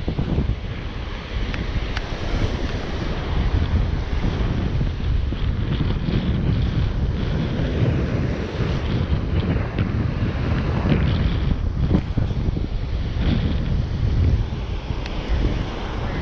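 Wind buffeting the microphone, with surf breaking on the shore beneath it.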